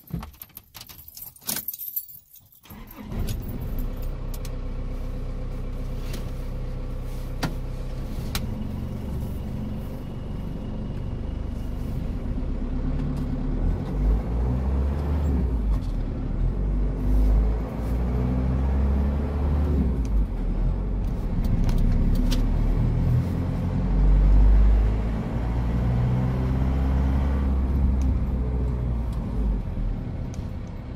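Keys jangling, then the Holden Rodeo ute's engine comes in about three seconds in and runs as the vehicle drives off, heard from inside the cab, its pitch rising and falling with the changing speed.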